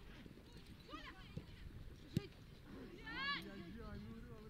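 Faint sounds from the pitch of a football match: players' shouts about one second in and again around three seconds, and a single sharp knock a little after two seconds.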